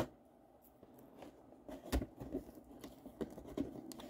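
Cardboard cereal box being handled and opened: faint rustling and crinkling with small ticks, the sharpest about two seconds in.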